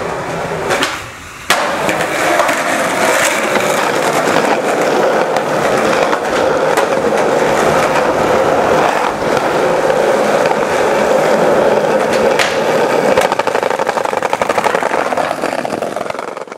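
Skateboard wheels rolling on pavement: a continuous rumble, with a sharp clack about a second and a half in and a few lighter clicks later.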